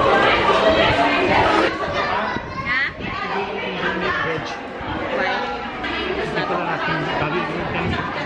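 Indistinct chatter: several people talking over one another, none of it clear enough to make out.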